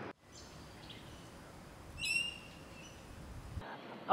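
Faint outdoor ambience with a single short, high bird call about two seconds in.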